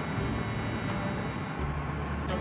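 Steady low vehicle rumble, with the low hum growing stronger about one and a half seconds in.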